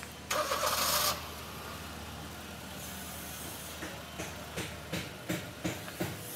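A motor vehicle's engine running with a steady low hum, with a brief loud rush about a third of a second in. From about four seconds in come short, evenly spaced knocks, about three a second and growing louder.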